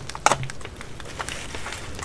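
Small stamp blocks being handled and fitted into a clear plastic case: one sharper click about a quarter second in, then scattered light taps and ticks.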